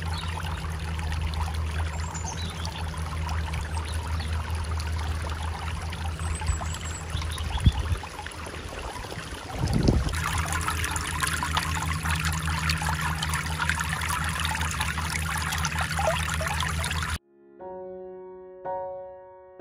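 Water trickling and splashing down a stacked-slate sphere fountain into its basin, over a steady low rumble. A brief knock comes about eight seconds in, and the sound shifts a couple of seconds later.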